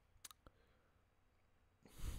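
Near silence with a few faint, sharp clicks in quick succession about a quarter to half a second in, then a short hiss that starts just before the end.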